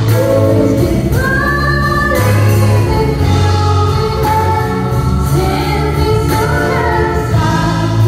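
Live band playing, with guitars and drums, as a woman sings lead into a microphone in long, held melodic lines.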